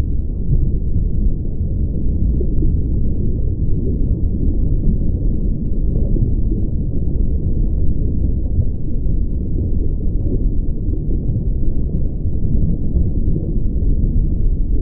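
A steady, deep, muffled rumble with nothing heard above the low range, unchanging throughout.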